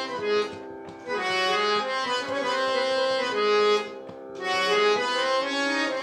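Harmonium played in phrases of Raag Todi, one melodic line of held and moving notes. It pauses briefly about a second in and again about four seconds in.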